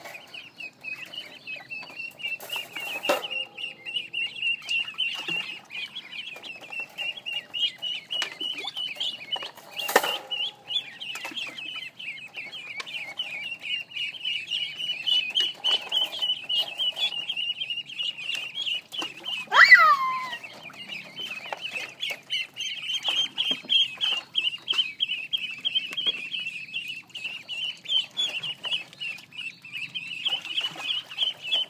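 A group of ducklings peeping continuously: rapid, overlapping high-pitched peeps. There is one louder call that falls in pitch about two-thirds of the way through, and a couple of short knocks.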